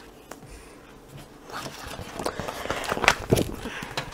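A picture book being closed and turned over on a table: paper rustling and the cover sliding, with a few soft knocks, starting about one and a half seconds in.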